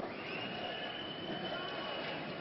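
Football stadium crowd noise with one long high whistle that slides up in pitch at the start and then holds steady for about two seconds.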